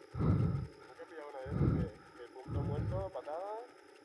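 Faint, distant voices talking in a few short phrases.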